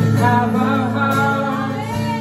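A live band playing a worship song, with acoustic guitar, electric guitars, bass, keyboard and drums under a single sung voice line that bends up and down in pitch.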